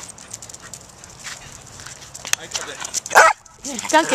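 Small dogs barking in play: one sharp loud bark about three seconds in, followed by a couple of short higher yips near the end, after a quieter stretch with a few light clicks.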